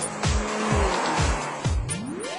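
A car rushing past at speed, mixed over electronic music with a steady kick drum at about two beats a second.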